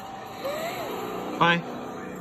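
Animated film soundtrack playing from a screen's speaker: a steady background bed with one short, loud voiced call of "Bye" about a second and a half in.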